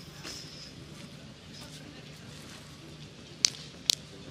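Quiet outdoor background with faint distant voices, broken near the end by two short, sharp sounds about half a second apart.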